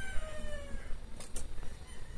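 A faint, drawn-out animal call that falls in pitch, followed a little after a second in by a few light clicks.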